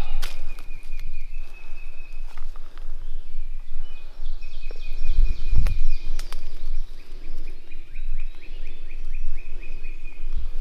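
Footsteps and rustling through dry leaf litter and brush, with a few sharp snaps, while a high-pitched animal trill runs steadily in the background.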